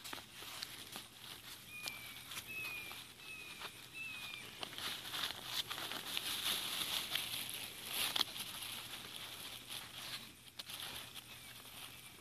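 Paper and plastic-bag stuffing rustling and crinkling as it is pulled by hand out of the end of a cardboard Pringles can. A bird gives four short falling chirps in the first few seconds.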